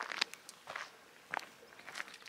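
Footsteps of a person walking on a gravelly track: a few irregularly spaced steps, fairly faint.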